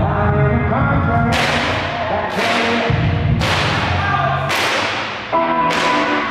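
Southern soul music with a low beat and sustained pitched lines, broken by five sharp cracks about a second apart, starting about a second in. Each crack trails off in a hiss.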